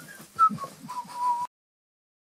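A man whistling a short phrase of a few notes, stepping down in pitch to a held final note, with soft knocks of movement close to the microphone. The sound cuts off suddenly after about a second and a half.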